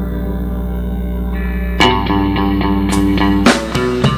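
Live band music without vocals: a held chord over sustained bass, then about two seconds in electric guitar notes picked in a steady rhythm, with drums coming in just before the end.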